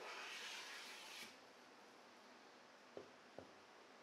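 Faint hiss of a hand plane stroke shaving along a walnut board, lasting just over a second, followed by two light taps near the end.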